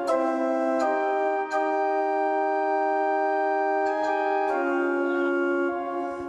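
Live concert music: sustained organ-like keyboard chords, held and shifting a few times, with no beat.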